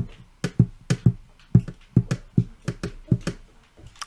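A pen tapping on paper on a desk: about a dozen short, sharp taps in an irregular rhythm.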